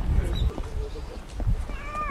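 A stray cat meowing once near the end, a single call that rises slightly and then falls, over low rumbling bumps.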